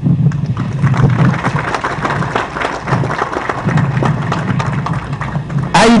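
Audience applauding: a steady spell of many hands clapping that fades just before speech resumes near the end.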